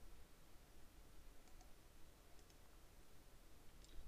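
A few faint computer mouse button clicks against near-silent room tone.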